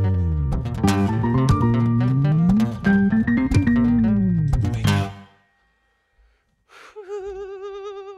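Cort acoustic-electric guitar played in a percussive picking style: quick picked notes over sharp hits, with low notes sliding up and down in pitch. The playing stops about five seconds in, ending the song.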